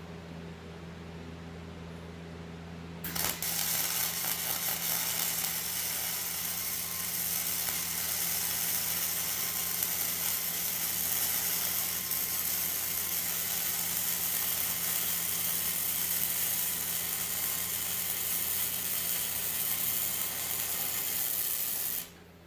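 Hobart Handler 125 flux-core wire welder arc crackling steadily while welding steel square tube, starting about three seconds in over a steady low hum and stopping abruptly at the end.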